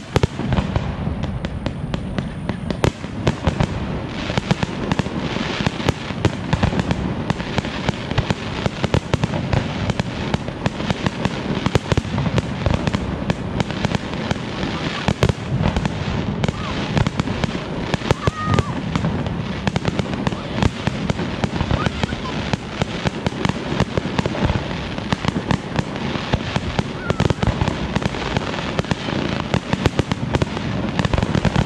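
Fireworks display: aerial shells bursting in quick succession with crackle, a dense, unbroken run of sharp bangs.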